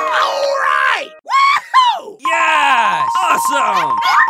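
A person's voice crying out: two short cries that fall in pitch a little after one second, then a long groan that slides steadily down in pitch.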